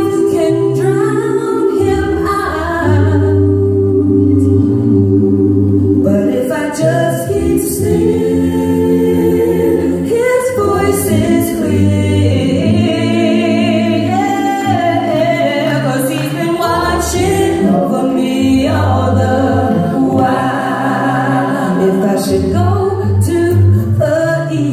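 A small mixed gospel vocal group singing a cappella into microphones, in close harmony with long held chords over a low bass voice.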